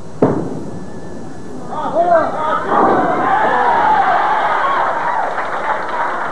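A bowling ball lands on the wooden lane with a sharp thud just after release. About two seconds later a crowd of spectators breaks into loud cheering and shouting as the ball carries for a strike.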